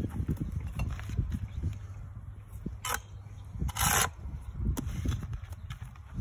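Bricklaying by hand: a narrow London-pattern brick trowel scraping and picking mortar while red bricks are set into the mortar bed. A few short scrapes and knocks come near the middle, the longest about four seconds in, over a low rumble.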